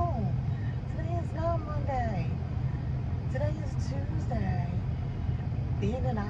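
A woman's voice talking in short stretches over a steady low rumble inside a car.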